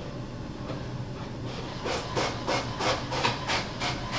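A quick run of soft rubbing strokes, about six a second, starting about a second and a half in.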